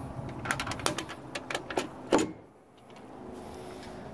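A boat's fibreglass anchor-locker hatch being handled and shut: a run of light clicks and rattles, then the lid closing with a single thump about two seconds in.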